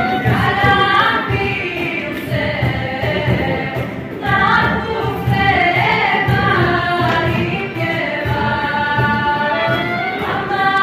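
A group of young women singing together in a choir, with long held notes.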